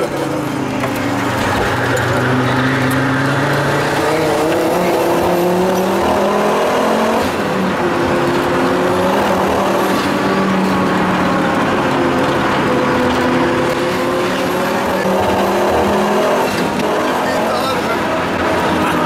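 Heavily tuned, turbocharged Volvo 850 T5R five-cylinder engine heard from inside the cabin under hard driving. Its note rises and falls as the throttle is worked, with a sudden drop in pitch about seven seconds in.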